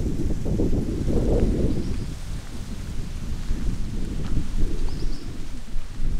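Wind buffeting the microphone: a gusting low rumble, heaviest in the first two seconds, then easing a little.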